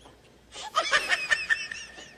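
A person laughing: a quick run of short, high-pitched giggles starting about half a second in, after a brief quiet moment.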